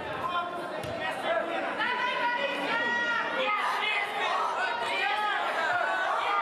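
Several voices calling and talking over one another in a large hall, some of them raised and high-pitched, with no single voice standing clear.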